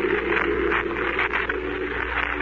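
Gong sound effect in an old radio broadcast, ringing on with several low held tones under a noisy, rushing wash. It is the dream's 'great gong' that wakes the dreamer.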